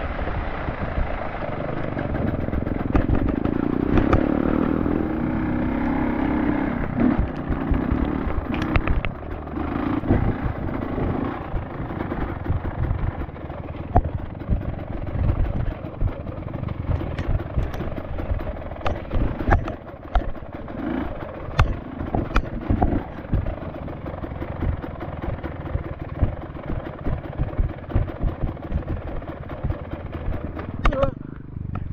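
Motorcycle engine running while riding, with frequent sharp knocks and clatter throughout.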